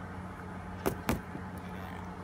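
Two short, sharp clicks about a quarter second apart near the middle, over a faint steady low hum.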